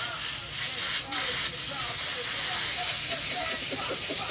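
Handheld steamer jetting pressurised steam onto a sneaker: a loud, steady hiss that dips briefly about a second in, then carries on.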